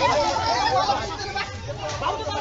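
Overlapping chatter from a group of young men talking over one another.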